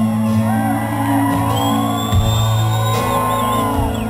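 Live rock concert heard from within the audience: the crowd cheers and whoops, and a shrill whistle rises above it partway through, over low sustained tones from the band on stage between songs.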